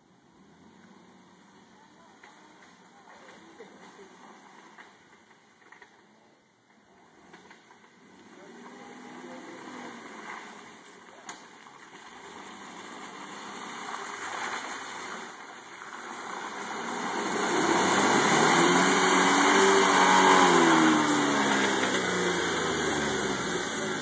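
Jeep Wrangler JK Rubicon's V6 engine running as the Jeep crawls through mud, faint at first and growing steadily louder as it nears. Its pitch rises and falls in the last few seconds, where it is loudest.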